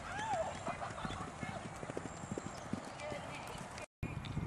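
A Thoroughbred horse galloping on grass: a quick run of hoof thuds. A person's voice calls out with a rising-and-falling whoop about a quarter second in. The sound cuts out abruptly just before the end.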